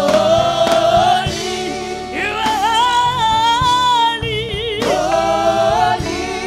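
Gospel praise team singing through microphones, in phrases of long held notes, over steady accompaniment.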